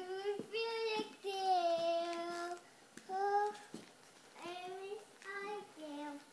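A young girl singing in short phrases with no clear words, holding one note for over a second from about a second in, with brief pauses between phrases.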